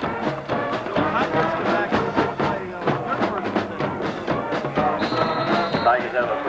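Music with a steady beat. A thin, steady high tone sounds for about a second near the end.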